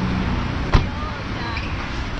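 A car idling close by amid street traffic, with one sharp knock a little under a second in.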